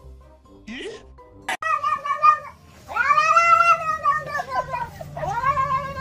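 A cat yowling in three drawn-out meows, each rising and then falling in pitch; the middle one is the longest and loudest.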